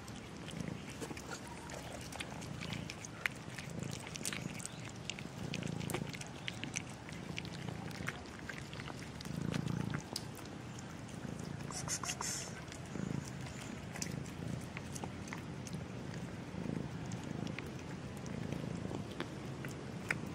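A domestic cat purring close to the microphone, the low purr swelling and easing with each breath about every second or two, with light scattered clicks alongside.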